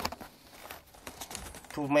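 A sharp click, then rustling and scraping with scattered small clicks, like handling in loose earth. A man starts speaking near the end.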